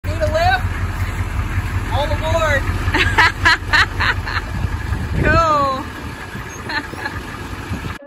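A diesel school bus engine running with a steady low rumble that stops about five seconds in. Over it come several high, gliding whoops from a voice, and a cluster of short sharp sounds about three to four seconds in.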